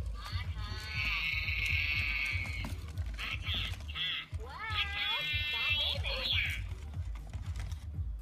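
Furby toys chattering and singing in high, warbling electronic voices, in two long phrases with short bursts between, over a steady low pulsing rumble as they dance.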